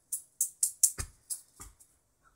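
Juggling balls landing in the hands in a quick run of catches, sharp clicks at about four a second, with one heavier thump about halfway.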